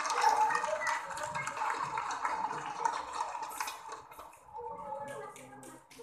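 Several voices shouting and laughing, loudest at the start and fading over a few seconds, with a few short sharp sounds near the end.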